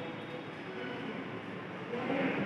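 Steady background noise of a large, hard-surfaced hall, with faint distant voices in it.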